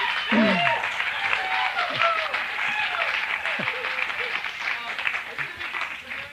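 Audience applauding, with many voices laughing and calling out over the clapping, dying down near the end.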